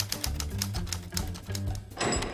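Title theme music with a steady bass line under a rapid run of typewriter key clacks, a sound effect timed to the title being typed out.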